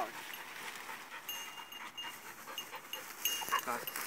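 A dog, the young English setter, panting, with short high chirps at a steady pitch coming and going behind it.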